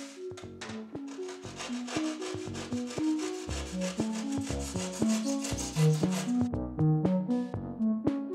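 Hacksaw rasping through rigid foam insulation board, stopping about six seconds in, over background music with a stepping melody and a beat.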